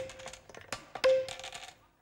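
Hard plastic scoring tokens clacking against a clear acrylic box as they are handled, with two loud clacks, the second about a second in, each followed by a brief ringing tone, and lighter ticks between.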